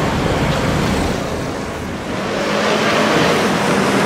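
City street traffic noise, a steady rumble of passing vehicles that dips about two seconds in and swells again.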